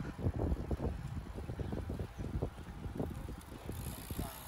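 Wind buffeting the microphone of a camera carried on a moving road bicycle, in irregular low gusts.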